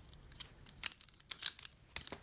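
Several sharp clicks of a Crafter's Choice plastic pom-pom maker from Dollar Tree, its arms popped back into place and handled, with a quick run of clicks past the middle.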